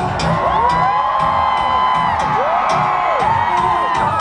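Electronic dance-pop with a steady beat, played loud through a concert sound system and recorded from among the audience, with many fans screaming and whooping over it.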